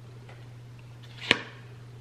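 A single sharp snap of a tarot card being flicked or pulled from the deck, about a second in, over a steady low electrical hum.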